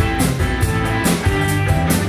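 Live rock band playing an instrumental passage: guitars and bass with a drum kit keeping a steady beat of cymbal and drum hits.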